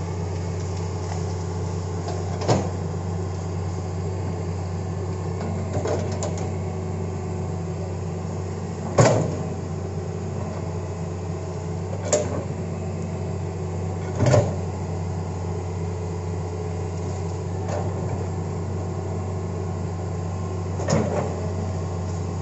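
Hitachi hydraulic excavator's diesel engine running steadily while its bucket works through brush and felled trees, with a sharp knock or crack every few seconds, the loudest about nine seconds in.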